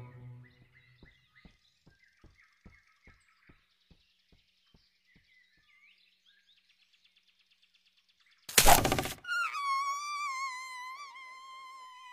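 Cartoon soundtrack in which faint bird chirps sit under a run of soft, quick taps that fade away. About eight and a half seconds in comes a loud, sudden thump, followed by a high held musical note that wavers and slides slightly down.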